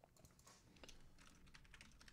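Near silence with a few faint, scattered clicks from a computer keyboard being typed on.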